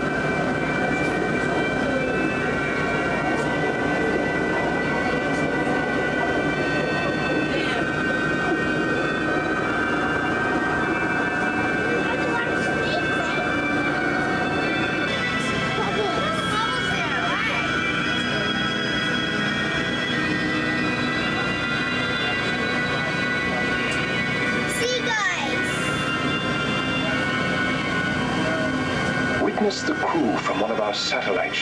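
The submarine ride's soundtrack playing its 'fish talk' sequence, presented as fish voices picked up by the submarine's hydrophones: chattering, chirping calls with gliding sweeps about sixteen seconds in and again about twenty-five seconds in. Steady held musical tones and a low rumble run underneath.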